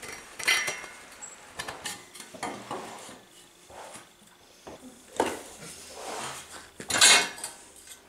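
Steel-plate and timber drum frame being handled and shifted: a series of separate metallic clanks and knocks with a short ring, the loudest near the end as it is tipped over.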